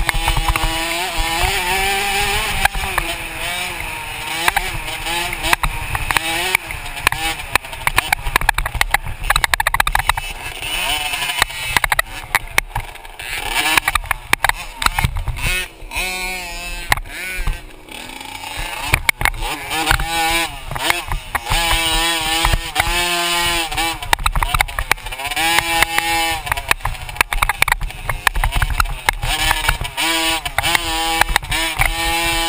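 Motocross dirt bike engine heard from on board, revving hard and easing off again and again, its pitch rising and falling every second or two as the rider works the throttle around the track. Under it is a steady low rumble with scattered knocks from the ride over rough ground.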